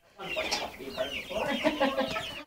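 A flock of chickens clucking, with many short calls overlapping one another.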